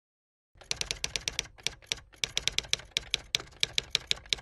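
Typing sound effect: a quick run of sharp key clicks starting about half a second in, with a couple of brief pauses.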